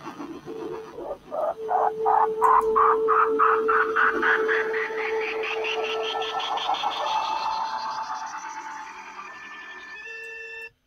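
Cartoon sound effect: a rapid pulsing warble, about five pulses a second, that climbs steadily in pitch and slowly fades, over a steady held tone in the first half.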